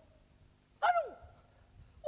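A man's single short vocal sound, like a breathy exclamation or sigh, falling in pitch about a second in, with quiet room tone either side.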